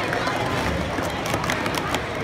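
Plastic sport-stacking cups clacking against each other and the table as they are stacked and brought down, a fast run of sharp clicks through the second half, over the chatter of a crowded gym.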